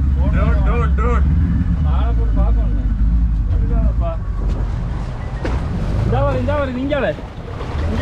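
Glass-bottom tour boat's engine running, a steady low rumble that is the loudest sound throughout, with people's voices over it at times.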